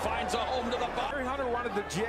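Original boxing broadcast audio: a male commentator talking over the arena crowd, with a few short sharp knocks of punches landing.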